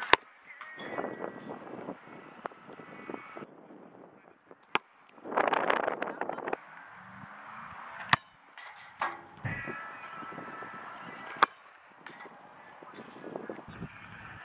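Outdoor open-field background noise, broken by four sharp clicks spaced about three to four seconds apart, with a louder rush of noise near the middle.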